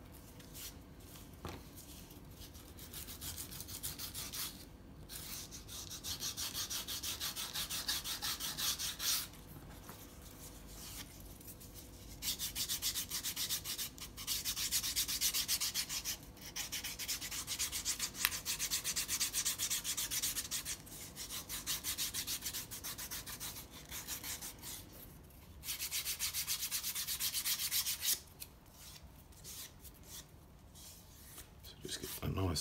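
Foam-filled sanding stick rubbed quickly back and forth along the cut edge of a leather belt loop, smoothing the edge. The strokes come in spells of a few seconds with short pauses between.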